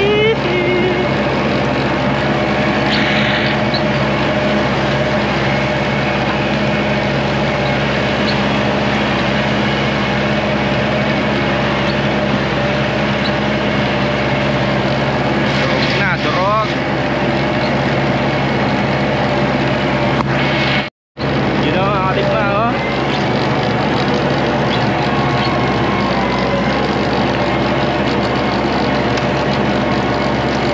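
Tractor engine running steadily under load, driving a rear-mounted rotary tiller (rotavator) that churns dry, clodded soil: a constant, even drone. The sound cuts out completely for a moment about two-thirds of the way through.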